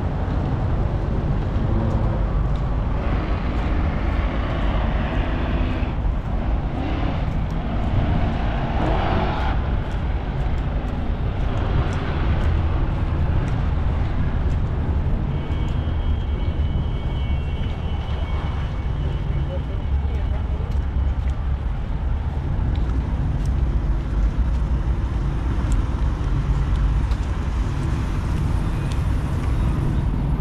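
Steady low rumble of outdoor background noise, with people's voices in the background during the first part and a faint high steady tone for a few seconds past the middle.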